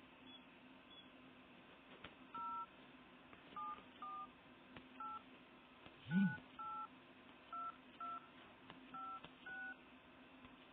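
Smartphone dialer keypad tones: ten short two-note DTMF beeps, spaced roughly half a second apart, as a ten-digit phone number is keyed in. A low thump sounds about six seconds in.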